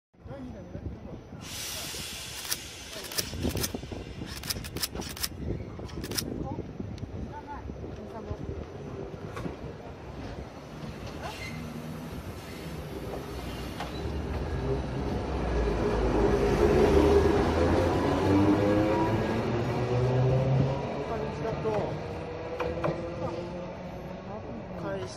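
Toden 7000-series tram car 7001 running past a platform, with sharp clicks in the first few seconds, then its motor whine growing louder and rising in pitch as the car gathers speed.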